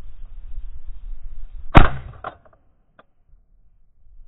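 A single shot from an ATA Arms Neo 12 semi-automatic 12-gauge shotgun about two seconds in, fired at passing ducks, over steady wind rumble on the microphone, followed by two fainter clicks.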